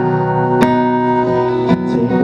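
Acoustic guitar strumming chords that ring on between sung lines, with two sharp strums, one about half a second in and one near the end.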